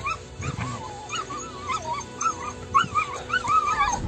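A dog whining: a run of short, wavering, high-pitched cries, one after another.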